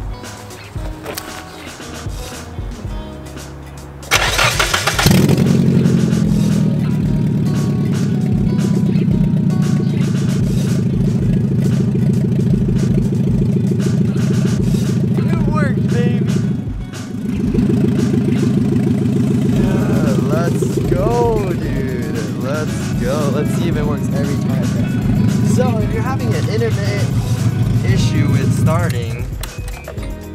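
A Nissan 240SX's engine is cranked and catches about four seconds in, starting with its park switch bypassed. It then runs steadily, dips briefly near the middle, and carries on until it drops away just before the end.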